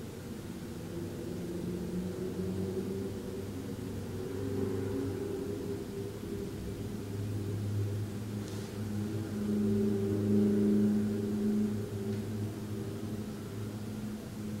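A low droning hum made of several steady tones, swelling to its loudest about ten seconds in and easing off again.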